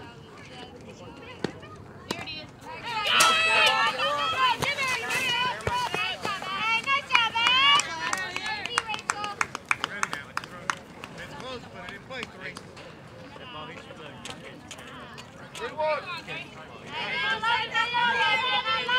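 Several high-pitched girls' voices cheering and yelling at once, with hand clapping, from about three seconds in; the cheering fades and then picks up again near the end.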